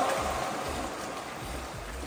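Pool water sloshing and splashing as two people wrestle waist-deep in it.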